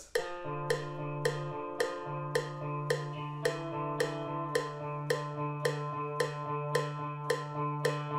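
PRS electric guitar playing a repeating picked arpeggio, about three notes a second, over ringing low notes.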